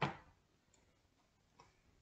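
A sharp click at the start, then two faint light clicks spaced a little under a second apart.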